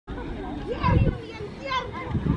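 Girls' voices calling out and chattering, with no clear words; the loudest call comes about a second in.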